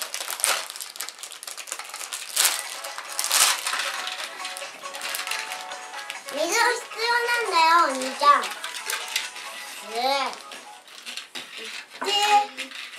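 Plastic candy-kit packet being torn open and crinkled by hand for the first several seconds, in short scratchy rustles. After that a child's voice rises and falls in a sing-song way, twice.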